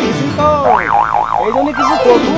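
Cartoon-style comic sound effects: springy 'boing' sounds whose pitch rises and falls in short arches, with a fast up-and-down wobble in pitch through the middle.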